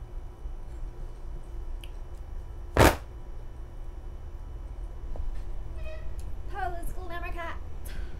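A large folding hand fan (a clack fan) snapped open once with a single sharp, loud crack about three seconds in.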